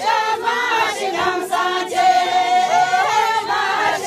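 A group of women singing a Hyolmo folk dance song together, mostly on one melody line in unison.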